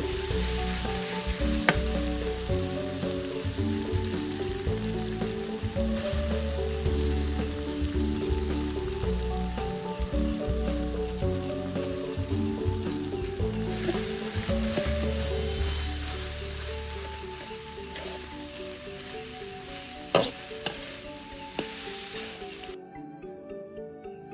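Vegetables and cassava rice sizzling in a large aluminium wok while a metal spatula stirs and scrapes, with a sharp clink of the spatula on the pan now and then, over background music. The frying fades in the last part and stops shortly before the end.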